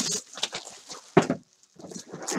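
Cardboard jersey boxes being handled and set down on a wooden desk: a few sharp knocks with rustling between them, the loudest about a second in.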